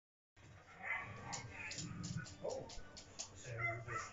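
A dog barking, over speech and music from a television.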